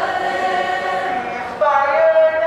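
A group of voices singing together in unison, holding long notes, then moving to a new, louder note about a second and a half in.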